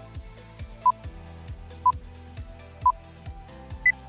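Quiz countdown timer beeping once a second over light background music; the last beep is higher-pitched, marking the end of the countdown.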